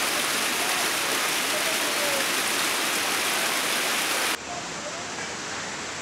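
Steady hiss of heavy rain, with faint voices underneath. About four seconds in, the sound drops suddenly to a quieter, duller hiss.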